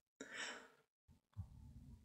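A single audible breath by a man about a quarter second in, lasting half a second, then near silence with a faint low room hum.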